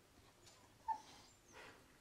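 A brief faint squeak about a second in, then a soft rustle near the end.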